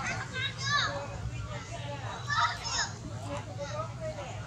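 Macaques giving a run of high-pitched calls that glide up and down, loudest about two and a half seconds in, over a steady low hum.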